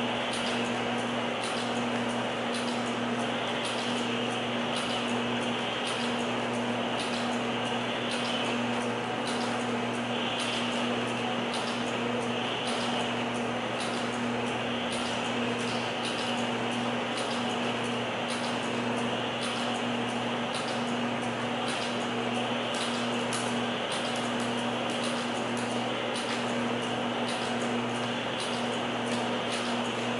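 Steady electrical hum and fan-like ventilation noise, with faint, evenly spaced ticks.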